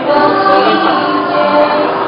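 A school choir of students singing a graduation song, several voices holding notes together.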